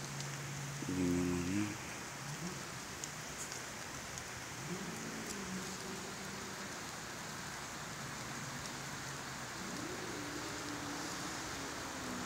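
Steady hiss of light rain. Faint pitched sounds rise and fall now and then, the loudest about a second in.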